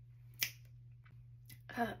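A single sharp click about half a second in, much louder than anything else, with a fainter click later and a steady low hum underneath; a short 'uh' near the end.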